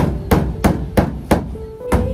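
A hammer driving nails into a plywood wall panel, about three sharp strikes a second, each nail ringing briefly after the blow. The pace falters near the end before the strikes pick up again.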